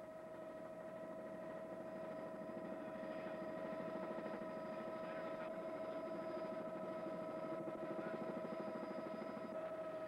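Helicopter hovering close by, its engine and rotor giving a steady drone with a constant whine that grows a little louder over the first few seconds.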